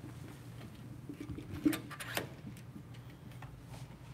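A few light clicks and taps of small hardware being handled as a camera-control wheel module is plugged back in and fitted, the loudest a little under two seconds in.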